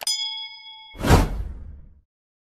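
A mouse click, then a bright bell-like ding that rings for about a second, followed by a loud whooshing hit that fades away: stock sound effects for a subscribe-button and notification-bell animation.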